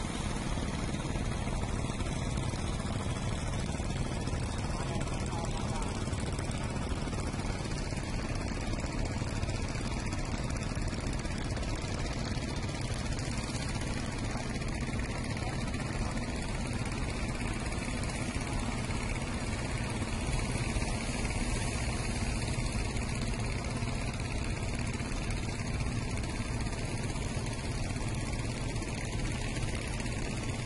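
Steady drone of a small fishing boat's motor running at an even pace, under a constant hiss of wind and water.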